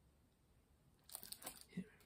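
Near silence, then about a second in, a short spell of light crinkling from plastic packing material being handled.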